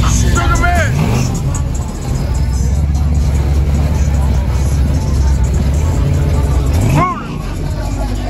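A car engine revs twice, once about a second in and again near the end, each rev rising and falling in pitch, over steady bass-heavy music and crowd chatter.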